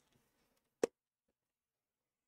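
A single short, sharp click from a sliding-blade paper trimmer a little under a second in, otherwise near silence.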